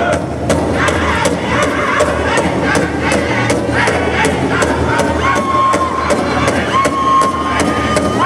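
A powwow drum group beating a large shared drum in a steady, even beat while the singers sing in high voices over it, holding long high notes in the second half.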